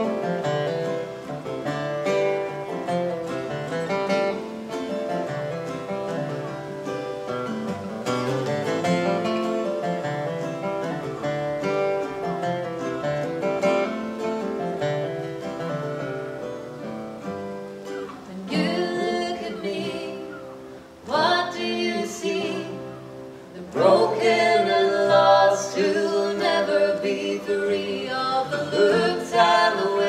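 Two acoustic guitars playing together as a song's introduction; after about eighteen seconds, singing comes in over the guitars.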